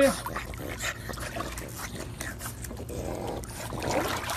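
Swimming-pool water lapping and splashing, with small irregular splashes.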